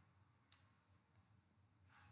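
Near silence: room tone, with one faint computer-mouse click about half a second in and a faint rustle near the end.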